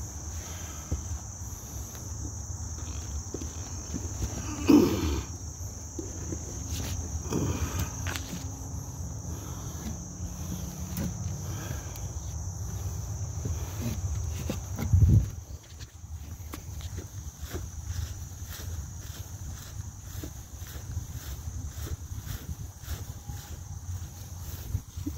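A steady high drone of crickets with the low rumble and rustle of a phone being carried while walking through brush. Two louder low bumps come about five and fifteen seconds in.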